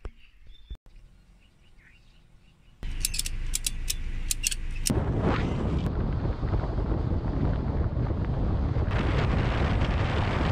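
Wind rushing over the microphone of a camera held outside a moving car, starting suddenly about three seconds in and then steady and loud, with sharp buffeting cracks for the first couple of seconds.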